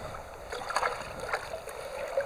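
Water splashing in a bucket as hands grab a live trout, a few splashes near the middle, over the steady rush of a shallow stream.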